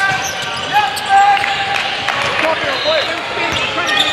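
Basketball game sound in a large gym: a basketball bouncing on the hardwood court amid overlapping voices and shouts from players and spectators.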